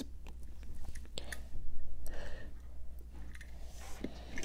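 Faint handling noises: a few small clicks and soft rubbing as die-cast toy cars are handled and moved on a wooden floor.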